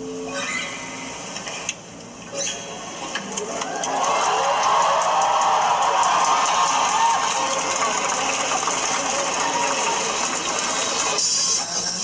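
Live concert audio of a male singer performing a ballad to acoustic guitar. It gets louder and fuller about four seconds in.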